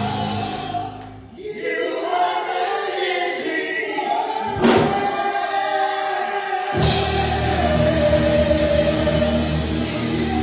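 Live gospel praise singing: a male lead vocalist with backing singers over a band. About a second in the band drops out, leaving mostly voices, with one sharp hit just before halfway; the full band comes back in just before seven seconds.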